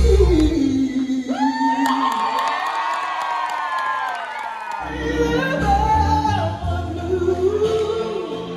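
Woman singing live into a microphone over backing music, holding long gliding notes. About two seconds in the bass and beat drop away so her voice carries alone, and the backing comes back in about five seconds in.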